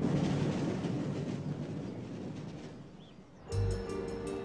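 A conveyor belt tipping lumps onto a heap: a dense, steady rattling rumble that slowly fades away. Music comes in about three and a half seconds in.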